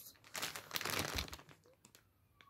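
Clear plastic packaging bag crinkling and rustling as it is handled, with rubber balls inside. The crinkling lasts about a second, then dies down to a few faint ticks near the end.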